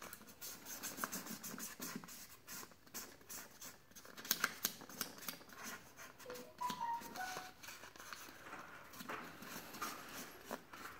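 Felt-tip marker scrubbing back and forth on a paper plate as stripes are coloured in: quiet, quick irregular scratchy strokes, with a few brief squeaky tones a little past the middle.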